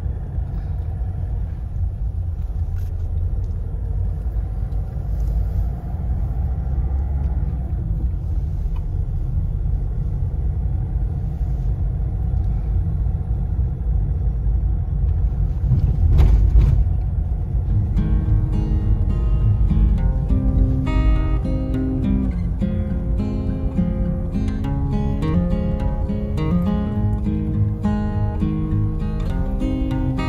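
Steady low road and engine rumble inside a moving car's cabin, with a single short knock about sixteen seconds in. From about eighteen seconds an acoustic guitar tune plays over the rumble.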